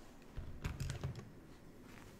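Several quick clicks from a computer keyboard between about half a second and a second in, and one more near the end.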